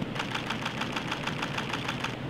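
Camera shutter firing in a rapid continuous burst, about eight frames a second, which stops abruptly near the end.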